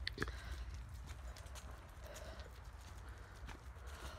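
Footsteps on a leaf-strewn tarmac path: a faint run of light, irregular taps over a low steady rumble.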